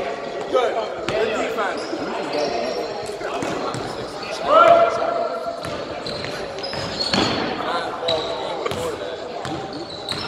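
Basketball game in a large gym hall: the ball bouncing on the hardwood floor among players' shouts and calls, echoing off the walls, with one loud shout about halfway through.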